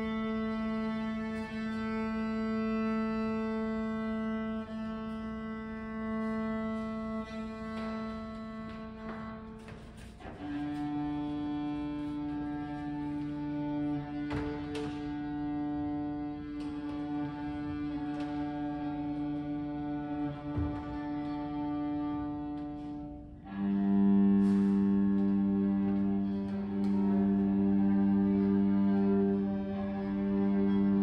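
Cello and violins tuning: long, steady held notes, first on A, then on D about a third of the way in, then louder on G about two thirds of the way in, the way strings tune string by string in fifths. A few faint clicks of bows and handling.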